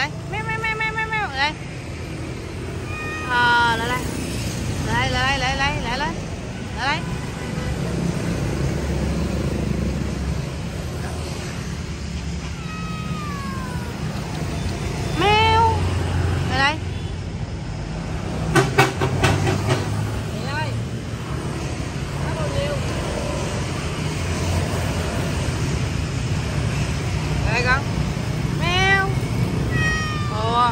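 Persian cat meowing several times in short rising and falling calls, over a steady low traffic rumble, with a brief cluster of sharp knocks a little past the middle.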